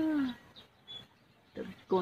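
A person's drawn-out coaxing call, falling in pitch, fades out just after the start. A faint single high chirp follows about a second in, then a short spoken 'na!' near the end.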